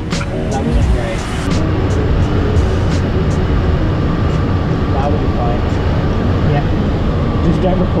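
Steady rush of air around a glider's canopy, heard from inside the cockpit during the approach, with no engine.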